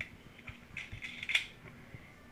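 Small metal clicks and light handling noise as steel jam nuts are picked off a workbench and fitted onto bolts through a plastic fuel-pump top hat, with one sharper click a little after a second in.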